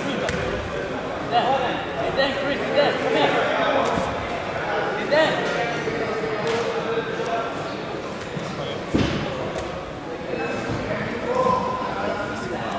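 Voices calling out and talking, echoing in a large sports hall, with a few scattered thuds; the strongest thud comes about nine seconds in.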